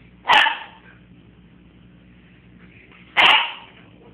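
Brussels griffon barking, two sharp single barks about three seconds apart. He barks because he can't jump up.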